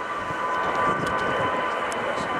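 Boeing 767-300ER's jet engines whining steadily as it taxis: several steady high tones over an even rushing noise.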